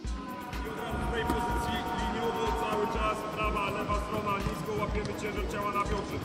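Background music with a steady bass beat, starting abruptly at the start.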